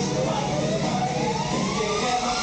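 A single siren-like tone sliding slowly and steadily upward in pitch, over music and crowd chatter from a theatre show's sound system.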